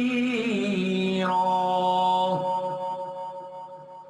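Quran recitation: a reciter's voice draws out a melodic, ornamented note, then about a second in settles on one steady held note that fades out over the last couple of seconds.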